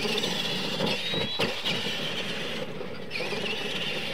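High-pitched electric motor and gear whine from RC monster trucks racing on a dirt track, rising briefly in pitch about a second in and otherwise steady, over a rough running noise.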